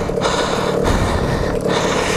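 KTM two-stroke dirt bike engine running steadily, without revving.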